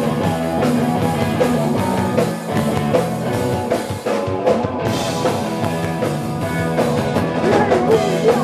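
Live rock band playing loudly on electric guitars, bass and drum kit, with short dips in the sound a little after two seconds and again around four seconds.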